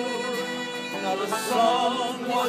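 Uilleann pipes and acoustic guitar playing an instrumental passage of an Irish ballad, with steady held tones under a moving melody.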